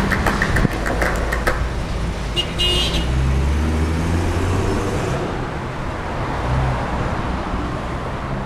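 A minibus driving past on the road, its engine rumbling most strongly a few seconds in, with a short horn toot about two and a half seconds in; traffic noise carries on after it has passed.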